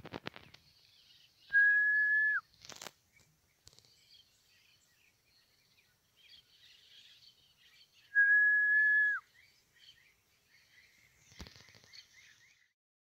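A person whistling twice: two long, steady single-note whistles, each just under a second, with the pitch dropping away at the end, about six seconds apart. Faint bird chirps run underneath, and there are a few short handling knocks.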